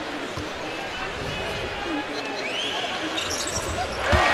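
Basketball dribbled on a hardwood court before a free throw, a few low thuds over the steady murmur and chatter of an arena crowd.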